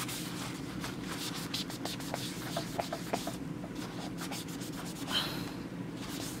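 Bounty paper towel rubbed briskly over the aluminium back of an iPhone 7, a run of quick scratchy strokes scrubbing at one stubborn spot, with a short lull about halfway.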